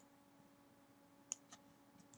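Two quick computer mouse clicks in close succession, a little over a second in, over near silence; the pair fits a double-click selecting a word of text.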